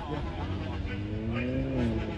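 A car engine revving: its pitch climbs steadily, peaks near the end, then drops back.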